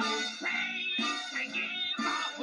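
Song from an animated film's soundtrack: a cartoon character singing over the backing music, played back through a CRT television's speaker.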